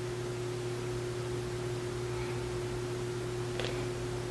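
Quiet room tone: a steady low electrical hum over faint hiss, with one faint click about three and a half seconds in.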